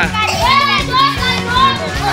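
Children's high voices chattering and calling out together, over background music.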